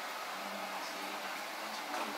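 Faint steady hiss with a low hum: quiet room tone, with no music or speech.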